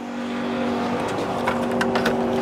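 A steady mechanical motor hum that swells up in the first half second and holds one even pitch, with a few light clicks about three quarters of the way through.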